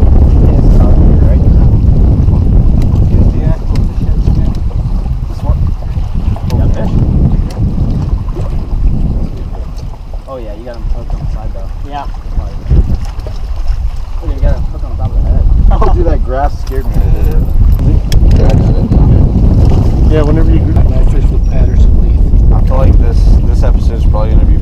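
Wind buffeting an action camera's microphone: a heavy, steady rumble that eases about ten seconds in, then builds again. Faint voices come through at times.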